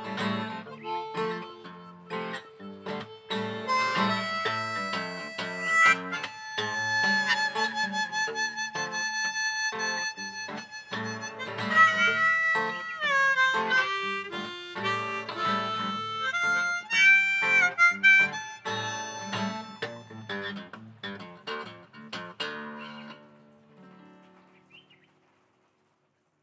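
Blues harmonica playing a closing solo of long held notes, some sliding down in pitch, over a fingerpicked acoustic guitar. The playing dies away to silence near the end.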